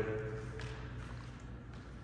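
Quiet room tone with a faint steady low hum; the echo of a voice dies away at the very start.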